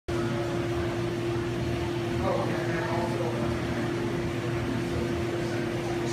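Steady mechanical hum with a constant low tone, typical of the pumps and air handling in an aquarium hall, with faint voices in the background about two to three seconds in.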